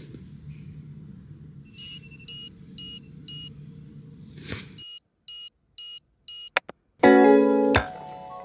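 Electronic alarm beeping: two runs of four short, high beeps about half a second apart, with a brief whoosh between the runs. Piano and guitar music starts near the end.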